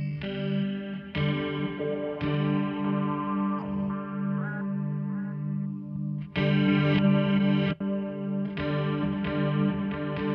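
Electric guitar played through a chain of fuzz, reverb and modulation pedals, giving distorted, washy shoegaze chords that ring on and are re-struck every second or two, with some wavering notes in the middle.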